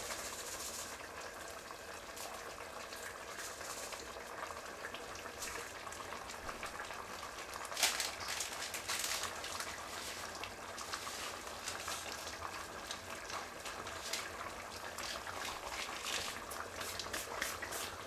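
Zirvak for plov (lamb, carrots and onions in water) boiling hard in a stainless steel pot: steady bubbling with a continual crackle of small pops and a few louder ones.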